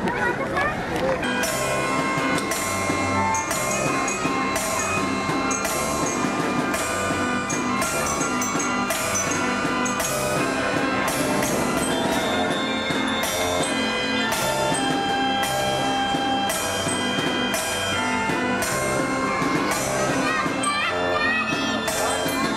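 Fairground band organ playing a tune, its pipes holding steady notes over a regular drum beat.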